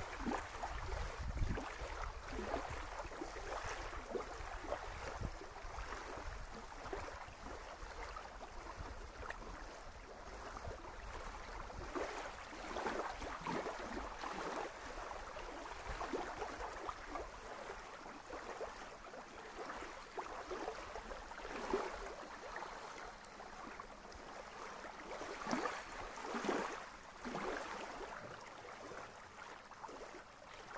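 Small lake waves lapping on a sandy shore, an irregular splash and wash every second or two. Low wind rumble on the microphone in the first few seconds.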